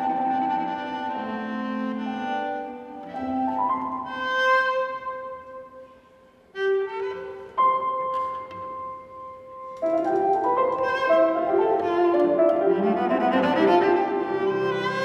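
Cello and grand piano playing classical chamber music: sustained bowed cello notes over piano. About six seconds in the playing drops to a brief hush, then resumes, and from around ten seconds it turns fuller and louder.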